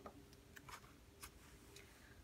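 Near silence, with a few faint ticks from a picture book's paper page being turned by hand.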